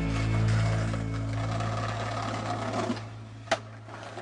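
Skateboard wheels rolling over concrete, a steady low rumble that fades, with one sharp clack about three and a half seconds in.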